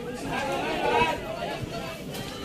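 Chatter of several people's voices, overlapping and not clearly worded.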